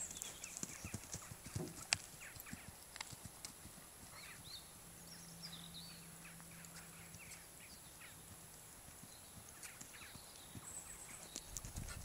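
Hoofbeats of a horse cantering on a sand arena, faint and irregular, growing louder near the end as the horse comes up to a small pole jump.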